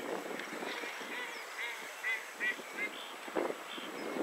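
Waterfowl calling: a quick run of about five short, high call notes in under two seconds, followed by a brief low knock.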